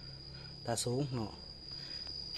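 A man speaking briefly in Lao, over a steady high-pitched tone that runs throughout.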